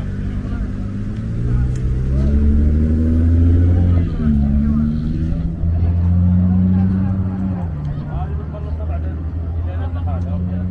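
A vehicle engine revving: its low pitch climbs steadily for about four seconds, drops suddenly, climbs and holds, then drops again near the eighth second.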